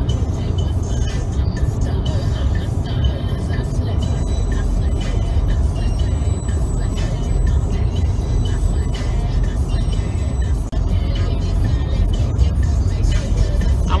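Music playing from a car stereo inside a moving car, over steady road and engine rumble.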